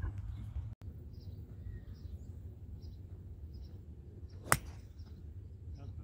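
A single sharp crack of a golf club striking a black Volvik Vivid golf ball on a tee shot, about four and a half seconds in and the loudest thing heard, over a steady low rumble of wind with faint bird chirps about once a second.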